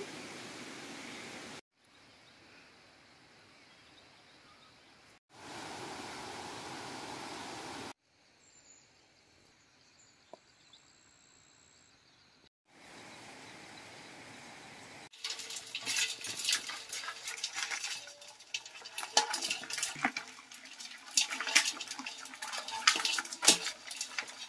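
Live river crabs clattering and scraping against a metal basin as they are handled: a dense run of sharp clicks and rattles over the last nine seconds or so. Before that, stretches of steady outdoor hiss break off abruptly into silent gaps.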